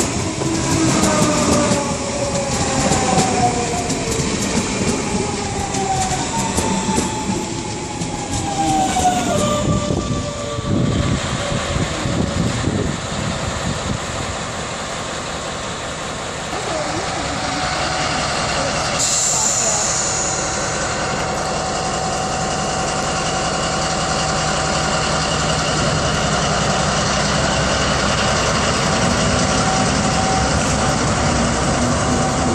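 An electric S-Bahn train passing with a falling electric whine over the first ten seconds or so. Then a class 202 diesel-hydraulic locomotive moves slowly past, its engine running with a steady drone and a brief high hiss partway through.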